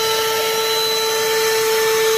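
Handheld 12-volt car vacuum cleaner running steadily, its small motor giving a constant whine over the rush of suction air.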